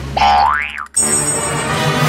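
Cartoon sound effects over music: a springy boing that sweeps up in pitch and back down, cut off sharply just before the midpoint. A bright, high, held tone follows as a shiny sting.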